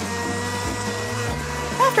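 Glass countertop blender running steadily, puréeing banana, kiwi and raspberries into a smooth pink mix.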